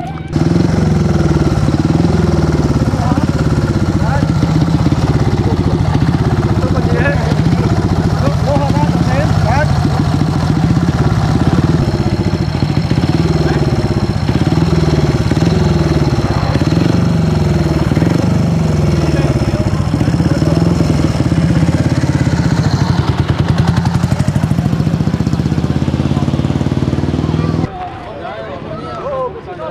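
Small motorcycle engine revved over and over, its pitch rising and falling again and again. It is loud and starts and stops abruptly.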